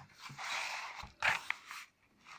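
Paper rustling as a textbook page is turned, in a few short swishes.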